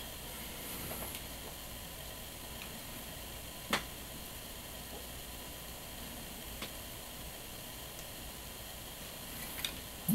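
Faint steady hiss with a few small clicks as a screwdriver works the tiny screws out of an action camera's image-sensor board; the sharpest click comes just before four seconds in.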